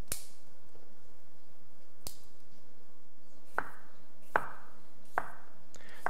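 Fresh asparagus spears snapped by hand and cut with a knife on a wooden chopping board. A sharp crack comes right at the start and another about two seconds in, then three knocks come under a second apart in the second half.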